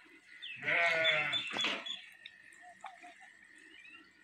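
A goat bleating once off camera, a wavering call lasting about a second and a half.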